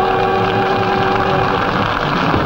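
A live blues band's final held chord, two steady notes that stop about a second and a half in, under steady audience applause that carries on after.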